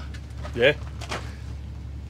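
A man's brief 'yeah' over a steady low mechanical hum.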